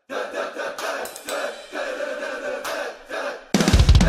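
A drum kit comes in suddenly and loud about three and a half seconds in, with bass drum, snare and cymbals, after a quieter stretch with scattered light ticks.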